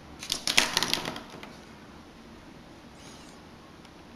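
Light clicks and scratches of small tools and plastic parts handled on an opened-up compact camera, in a quick cluster over the first second and a half.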